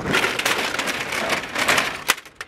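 Shopping cart rolling fast across parking-lot asphalt, its wheels and wire basket rattling steadily.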